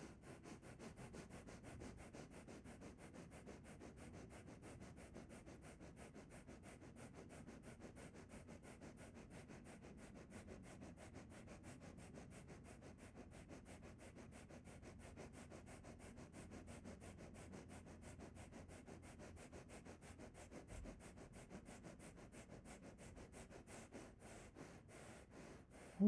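Bhastrika pranayama: rapid, forceful breathing in and out through the nose. It comes as a faint, even rhythm of quick breaths.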